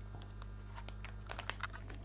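Foil sample sachets crinkling and tapping on a tabletop as they are handled and set down: a scatter of short clicks that bunch together near the end.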